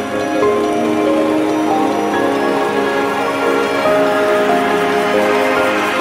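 Background music of held notes that change every second or so.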